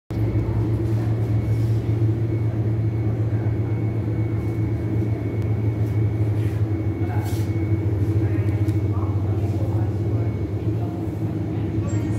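Steady low machine hum with a thin high tone above it, and faint voices in the background.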